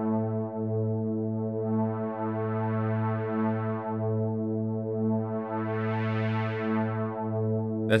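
Sylenth1 software synthesizer pad holding one sustained low note. Its low-pass filter cutoff is swept by an LFO, so the tone brightens and darkens in slow swells about every three seconds. The last swell is the brightest.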